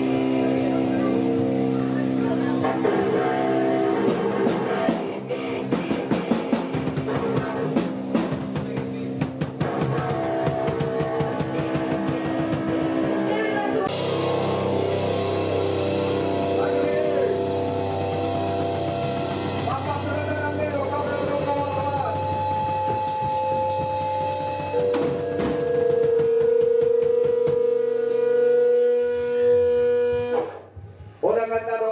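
A rock band playing live: electric guitars ringing out sustained chords over a drum kit, with busy drumming in the first half. A long held guitar note fills the last few seconds.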